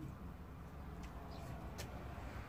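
Faint outdoor background: a low steady rumble with a few faint, brief high clicks.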